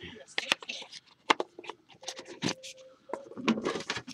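Handling noise from a trading-card box and the cards in it: a string of sharp clicks and taps with short scrapes between them as cards are pulled from the box.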